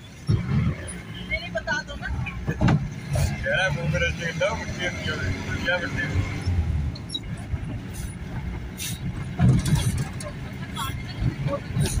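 A vehicle driving, heard from inside the cabin: a steady low engine and road rumble with a few knocks from bumps, and muffled voices in the middle of the stretch.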